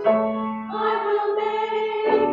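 Mixed church choir singing a hymn, holding long notes and moving to a new chord just under a second in.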